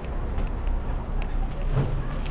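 Steady low rumble of handling noise from a body-worn camera carried at a walk, with a few faint light clicks and a short low murmur near the end.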